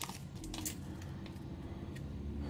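Soft handling of a stack of trading cards, with a few faint clicks and rustles about half a second in, over a low steady room hum.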